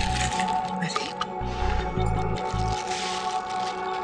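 Crinkling and rustling of metallic foil gift wrap as a present is untied and opened, over background music with a sustained tone and a pulsing bass.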